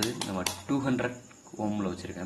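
The rotary range switch of a handheld digital multimeter clicking through its detents as it is turned, a few quick clicks in the first half second, while it is set to the resistance range for a resistor check. A man's voice speaks over it.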